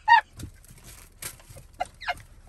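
A woman's high-pitched laughter: one last loud burst at the start, then a few faint, breathy gasps as the laugh dies down.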